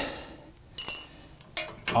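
A rusted steel U-bolt coming free of a trailer's tongue and clinking on metal: a short clatter at the start and a sharp, ringing clink a little under a second in.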